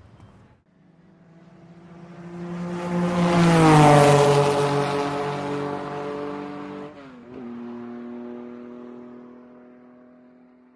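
Channel logo sting sound effect: a whoosh swells up and peaks about four seconds in, its pitched tone sliding down like something speeding past. A second quick downward swoop comes near seven seconds, then a held tone fades away.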